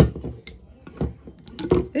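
Handling knocks from a stainless-steel insulated tumbler and its clear plastic lid as it is turned over in the hand: a sharp knock at the start, then a few lighter clunks and taps.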